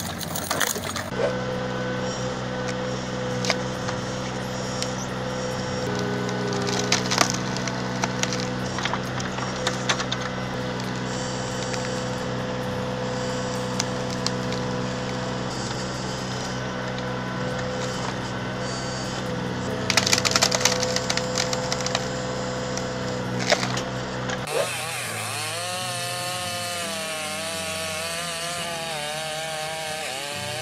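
Excavator-mounted hydraulic screw (cone) log splitter boring into logs and splitting them: wood creaking, cracking and splintering in sharp snaps over a steady machine hum. Near the end this gives way to a different sound whose pitch wavers up and down.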